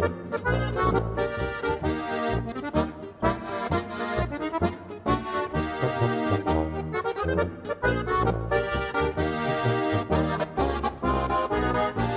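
Alpine folk music ensemble playing a polka française: an accordion carries the melody over a steady oom-pah tuba bass and guitar accompaniment.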